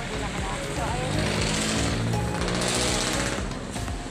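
A motor vehicle's engine running close by: a low hum that swells about a second in and eases off near the end. Background music with singing plays over it.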